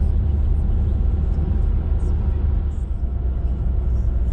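Car cabin noise at motorway speed: a steady low rumble with an even hiss of tyres and wind.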